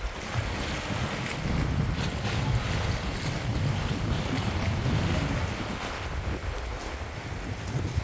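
Wind buffeting the microphone as a steady low rumble, over choppy water washing against pier pilings and rocks.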